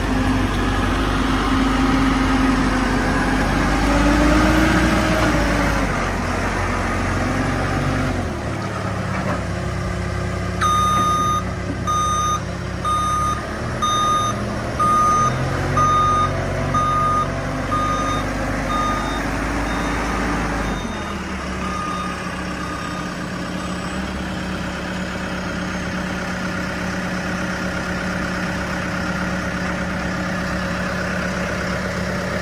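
2013 JLG G9-43A telehandler's diesel engine running and revving as the machine is driven. About a third of the way in, its reversing alarm beeps steadily, roughly every half second, for about eight seconds. The engine then settles to a steady idle.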